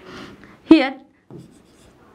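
Stylus scratching across the glass of an interactive display board as a number is written, mostly in the first half-second and again faintly near the end. A single short spoken word comes in between.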